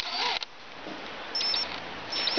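Cordless drill turning a castration hook slowly in short pulls, twisting a bull calf's spermatic cord, with a brief high motor whine about halfway through. A short hiss comes at the start.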